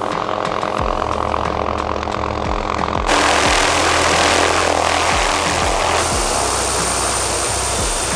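Background music with a steady beat of low notes. About three seconds in, the rushing noise of a small turbine helicopter (MD 500) setting down joins it, its rotor turning. A thin high steady whine comes in at about six seconds.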